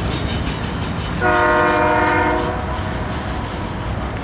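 Freight locomotive's multi-chime air horn sounding one blast of about a second, starting about a second in, over the steady rumble of the approaching train.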